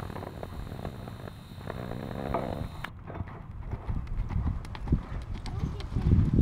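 Hoofbeats of a horse loping on soft arena dirt, a run of dull thuds that grows louder in the second half as the horse passes close by.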